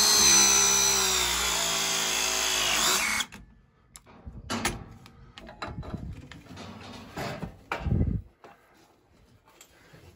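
Cordless pipe press tool running through a press cycle on a copper press fitting: the motor whine holds, sagging slightly in pitch as the jaws close, then cuts off about three seconds in. Light handling knocks follow, with a dull thump near the end.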